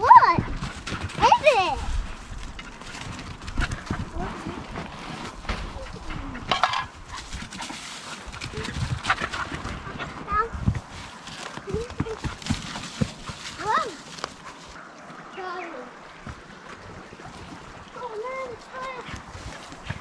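Short vocal sounds from a young child, with scuffing and rustling from movement on a dirt path through grass and leaves.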